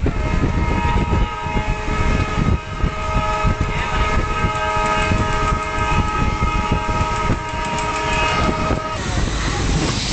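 Passenger train running, heard from aboard: a low rumble of wheels on the rails with irregular knocks, and over it a long, steady high tone from the train that holds for about nine seconds and stops about a second before the end.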